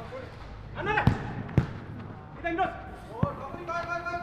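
A futsal ball being kicked on artificial turf: three sharp thuds, two about half a second apart near the first second and one more just past three seconds, with players shouting to each other.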